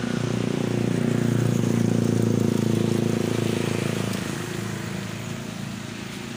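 A motor vehicle's engine running close by, a steady low hum that is loudest about two seconds in and then slowly fades.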